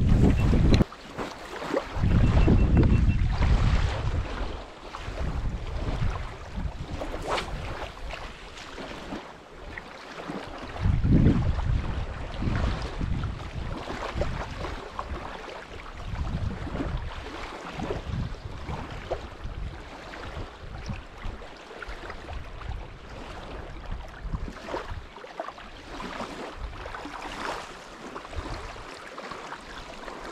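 Wind buffeting the camera microphone in uneven gusts, a low rumble that swells and fades. Louder knocks and rubbing come in the first few seconds as a hand handles the camera.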